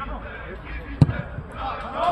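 A single dull thud of a football being kicked, about a second in, over distant players' shouts.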